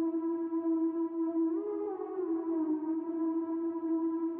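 Synth lead played from an Akai MPK Mini keyboard: one long held note that bends up slightly about one and a half seconds in, then settles back to pitch.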